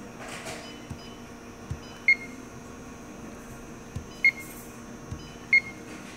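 Three short, high electronic beeps from a press brake controller's touchscreen keypad as number keys are pressed, spaced a second or two apart. Faint taps of a fingertip on the screen fall between them, over a steady low hum.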